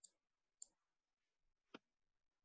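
Three faint, short clicks in near silence, the last a little fuller in tone than the first two.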